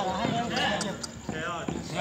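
Several men's voices shouting and calling out across an open court, with a few faint knocks.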